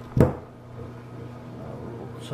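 A single short knock with a click about a quarter-second in, from binoculars being handled and worked on with a multi-tool, over a steady low hum.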